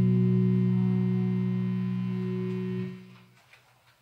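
Electric guitar's final chord ringing out and slowly fading, then dying away quickly about three seconds in as the sound stops.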